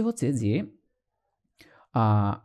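A man's lecturing voice in Bengali, breaking off under a second in. A pause follows, then a brief faint sound just before he speaks again.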